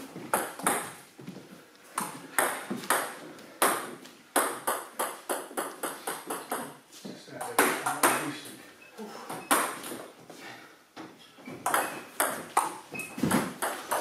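Table tennis ball clicking off bats and the table top in a rally, one sharp, hollow tick about every half second to second.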